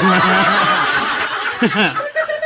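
Laughter over a man's held voice for about the first second and a half, dying away into a few short spoken syllables near the end.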